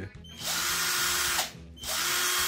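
Philco Force PPF03 12 V brushed cordless drill run with no load in two short trigger pulls. Each run spins up, holds a steady whine for about a second, then spins down; the second starts near the end.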